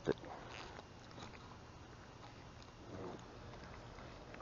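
Ultralight spinning reel being cranked to retrieve a small swimbait, giving faint, sparse soft clicks and ticks.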